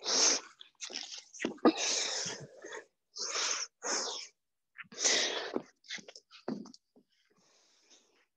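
Hard, forceful breathing of a person doing continuous burpees: loud, breathy exhales and gasps, roughly one a second, cut off sharply in between.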